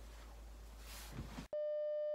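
Faint room tone with a couple of soft thumps. About one and a half seconds in it cuts abruptly to a steady electronic test-tone beep of the kind laid over TV colour bars.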